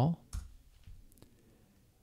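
A computer keyboard key clicked once about a third of a second in, followed by a couple of fainter ticks, choosing the install option in a boot menu.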